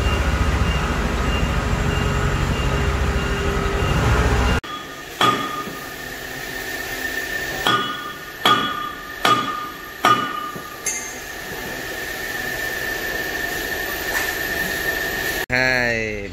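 A steady mechanical rumble for the first few seconds, then about five sharp metal strikes with a ringing after each: hand tools hammering on the steel track-roller undercarriage of a Kubota DC-70 combine harvester under overhaul. A thin steady whine runs through the last few seconds.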